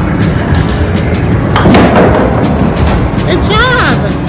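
Loud arcade din: game music and electronic effects over a low rumble, with repeated thumps and knocks from the machines.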